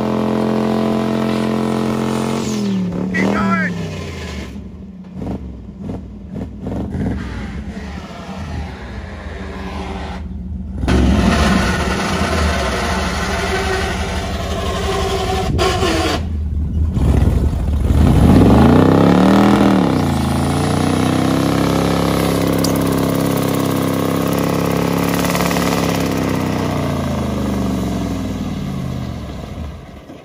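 Chevrolet squarebody pickup's engine running and revving: the revs rise and fall several times, with abrupt cuts between takes. Near the middle of the stretch a long rev climbs and falls back, then the engine holds steady at higher revs.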